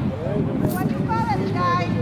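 Indistinct voices of spectators talking on the sideline, over a steady low hum.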